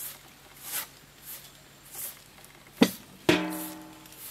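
A few soft rustles, then a sharp knock near the end, followed at once by a louder hit that rings with a clear tone and fades over about half a second.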